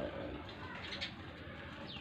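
Faint bird calls over a low steady hum.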